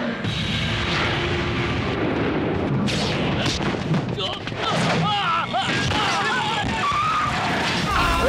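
Loud, dense action-film fight soundtrack: background score mixed with impact and crash effects, with a sharp hit about three seconds in. Men yell through the second half.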